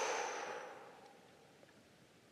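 A long breath out through the mouth, fading away over about a second and a half to near silence.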